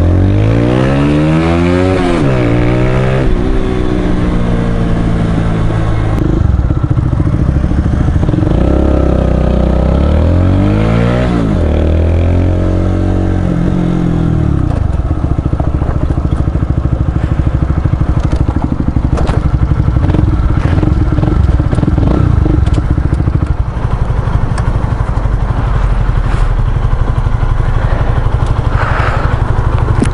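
Honda CBR125R single-cylinder four-stroke engine with an aftermarket Ixil Hyperlow exhaust, heard from the rider's seat. In the first half it revs up and shifts twice, pitch rising and then dropping at each gear change. From about halfway it runs at lower, steadier revs as the bike slows to a stop.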